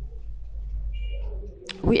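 A brief, faint bird call about a second in, heard in a pause over a low steady hum, followed near the end by a man's voice.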